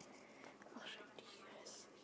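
Near silence: faint room tone with a few soft, brief breathy sounds.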